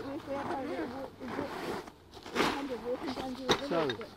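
Quiet conversation between people. A short burst of noise comes about two and a half seconds in, and a sharp click a second later.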